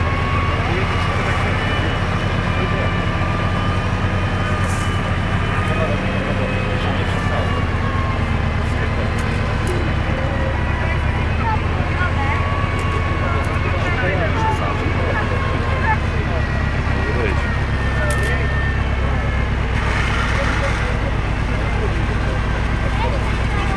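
Volvo BV 202 tracked vehicle's four-cylinder petrol engine running steadily under load as the vehicle crawls through deep mud and water, with a faint whine that drifts up and down in pitch.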